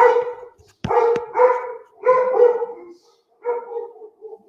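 A dog barking repeatedly, about six short barks coming mostly in pairs.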